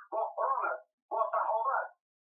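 A voice talking in two short phrases, then stopping near the end.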